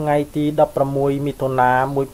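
Speech only: a voice narrating in an unbroken stream.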